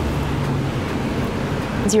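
A steady rushing noise with a low hum under it, holding even throughout.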